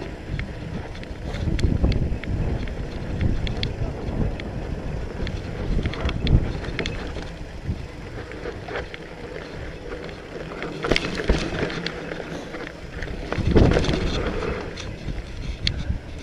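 Mountain bike descending a dry dirt and rock trail: wind buffeting the microphone over a steady rumble of tyres on the ground, with scattered clicks and knocks of the bike rattling over bumps, loudest a little before the middle and again near the end.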